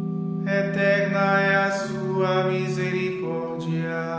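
A single voice chanting a line of a psalm in Portuguese over sustained accompaniment chords. The chords hold throughout, and the voice enters about half a second in and ends shortly before the close.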